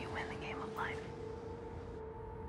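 A woman's soft, whispered words in the first second, then a quiet steady drone underneath.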